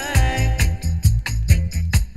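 Roots reggae music playing: a heavy bass line under a steady drum beat, with a held melodic note near the start.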